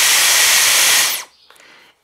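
Dyson Airwrap styler running at its highest airflow setting: a steady rush of air with a high motor whine. It is switched off about a second in, the whine falling briefly as it stops.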